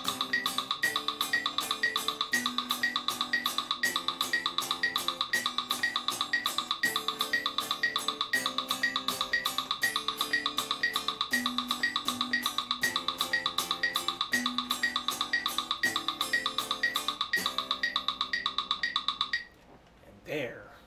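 Electric guitar strumming a progression of seventh chords, changing chord every couple of seconds, in time with steady metronome clicks. Both stop together shortly before the end.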